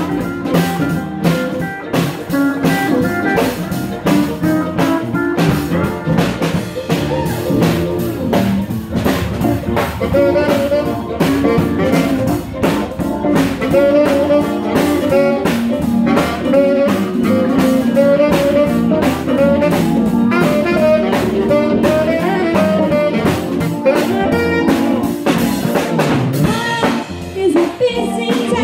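Live blues band playing an instrumental break: drums keeping a steady beat under upright bass, steel guitar and fiddle, with a saxophone taking the lead melody through the middle and later part.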